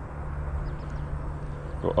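Steady low hum of a distant motor over faint outdoor background noise. A voice starts near the end.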